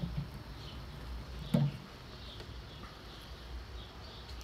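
Outdoor ambience: faint, scattered bird chirps over a steady low background rumble, with a single short knock about one and a half seconds in.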